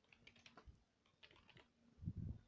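Faint computer keyboard typing: a handful of quick keystrokes, with a short pause about halfway through.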